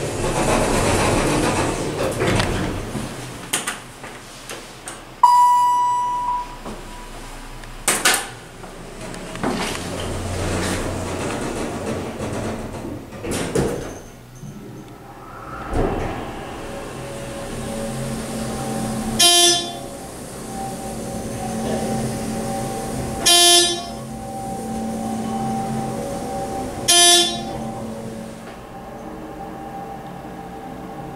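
ThyssenKrupp hydraulic elevator door sliding shut, followed by a short electronic chime and a couple of clunks. About halfway through, the older dry-mounted hydraulic pump motor starts and runs with a steady hum as the car rises, with three short electronic tones about four seconds apart.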